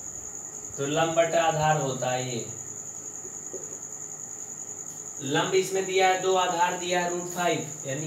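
A man's voice speaking in two short stretches, over a continuous, steady high-pitched tone that never stops or changes.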